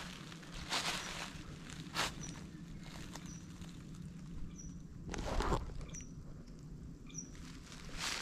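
A bird repeating one short, high-pitched call at an even pace, about once every second and a quarter; the call is one that even an experienced birder says he has never heard before. Brief rustling noises come in between, the loudest about five seconds in.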